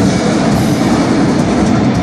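Live heavy metal band playing full-on, with distorted guitars and drums. The recording is overloaded, so the band comes through as a dense, unbroken wall of noise.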